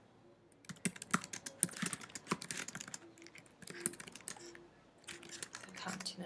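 Typing on a computer keyboard: quick runs of key clicks starting about a second in, with brief pauses between bursts, as a line of text is typed out.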